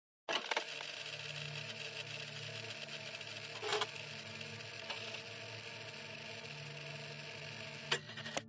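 Faint crackly hiss over a low hum, with a few sharp clicks just after the start and a couple more about four and five seconds in: an old-film crackle effect.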